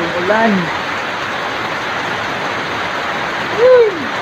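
Steady rain falling and dripping through palm fronds, with a short human voice sound just after the start and a louder rising-and-falling vocal exclamation near the end.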